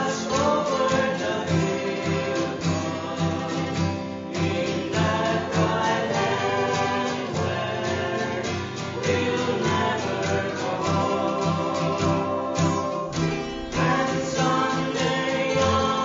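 Three women singing a sacred song in harmony, accompanied by a strummed acoustic guitar and a picked mandolin.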